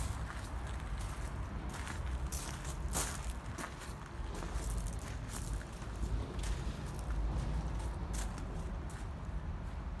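Footsteps crunching on gravel, irregular and uneven, over a steady low rumble.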